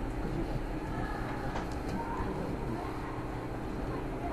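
Steady low background rumble and hiss, with a few faint clicks from keys being typed on a computer keyboard.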